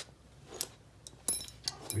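A few light, separate metallic clicks and clinks, a couple with a brief high ring, from sofa-bed assembly hardware being handled and fitted.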